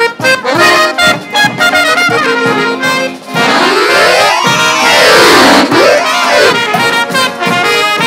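A Balkan brass band playing live: trumpets, trombones and tuba over accordion, snare and bass drum. In the middle the music makes a sweeping glide up in pitch and then back down.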